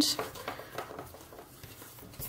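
Faint rustling and light handling noises of card and ribbon as a paper photo album is closed up and its ribbon tied.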